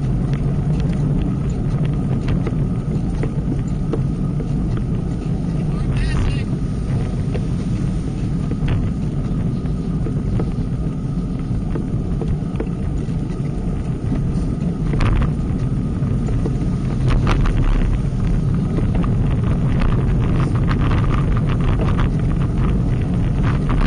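Wind rushing over an action camera's microphone during a group road-bike ride, with steady road and tyre rumble and scattered short clicks, more of them in the last few seconds.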